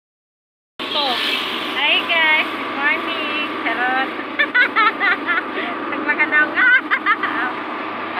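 Steady vehicle engine and road noise inside a jeepney's passenger cab, with people's voices talking over it; the sound begins abruptly just under a second in.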